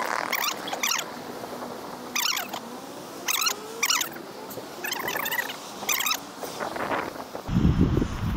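Open street ambience with a steady faint hum of the square, broken by about seven short high-pitched squeaks or calls spread through it.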